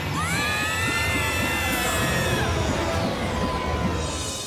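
Cartoon sound effect over music: a shrill tone rises sharply in pitch in the first half-second, holds for about two seconds and then fades. A dense low rumble runs beneath it.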